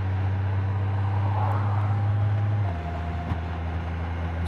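Honda Gold Wing's 1833 cc flat-six engine running steadily as the motorcycle cruises. About two-thirds of the way through, the engine note drops and quietens.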